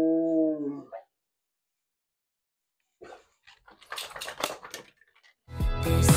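A drawn-out low vocal sound for about the first second, then small items being picked up and set down on a desk with a run of clicks and knocks, and background music starting near the end.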